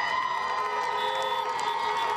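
Many car horns honking at once, several steady pitches overlapping and held, mixed with crowd cheering.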